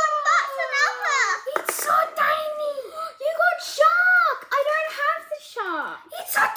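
Children talking in high voices.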